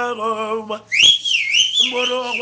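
Igbo live music: a male singer's sung line, broken about halfway through by a high whistled phrase that wavers up and down for about a second, after which the singing comes back in near the end.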